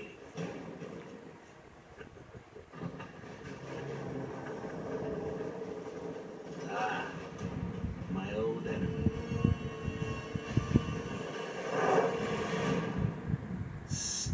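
Animated film soundtrack played from a TV: a held low tone builds and grows louder, with brief vocal calls and a run of sharp knocks in the second half.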